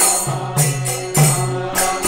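Devotional kirtan: voices chanting to music, with brass hand cymbals (kartals) clashing on a steady beat.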